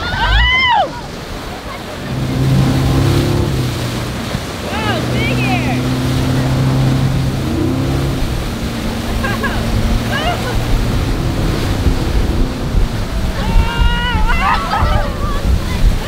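Super Air Nautique G23 towboat's inboard engine running steadily under power, under the rush of wake water and wind on the microphone. Short high-pitched yells break in near the start, about five and ten seconds in, and near the end.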